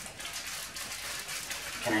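Faint rustling of a paper bag as dry brownie mix is poured from it into a glass bowl.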